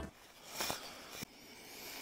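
Quiet background with a few faint clicks and rustles, about two small clicks in the middle.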